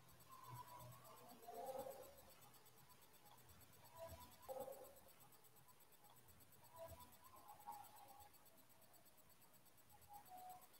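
Near silence: room tone, with a few faint, brief sounds about a second and a half in, around four seconds in and around seven seconds in.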